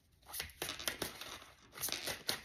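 A tarot deck being shuffled by hand: a quick run of short, papery card flicks and rustles.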